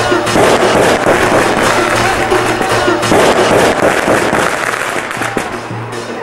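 Yemeni zaffa wedding music: a mizmar reed pipe playing over a rhythm beaten on a tabl drum and a tasa metal drum, whose sharp strikes crack through. A crowd's voices are mixed in loudly.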